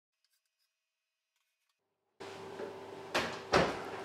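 Two sharp knocks about half a second apart, like an oven door being shut, over a faint steady hum. They come after about two seconds of near silence.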